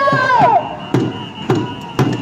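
Crowd voices holding a long chanted shout that drops in pitch and breaks off about half a second in, followed by drum beats at roughly two a second.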